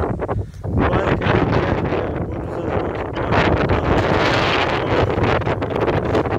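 Steady wind buffeting the microphone, with crackling and rustling of tall grass where a Highland cow is grazing.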